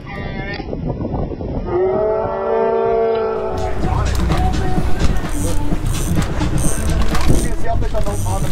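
A long, drawn-out groaning voice held on one pitch for about a second and a half, sounding muffled. From about halfway through, it gives way to wind and the steady rumble of a boat running at sea.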